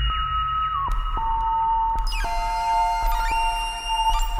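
Dreadbox Dysphonia modular synthesizer playing a patch of clear, whistle-like tones that glide down between held pitches over a low bass drone. About halfway through, a cluster of high, bright tones joins in.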